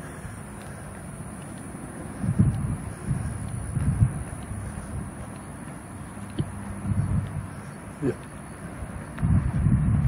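Irregular low thumps and rumble from walking with a phone on a handheld stabilizer: footfalls and handling bumps carried to the phone's microphone. A man says "yeah" near the end.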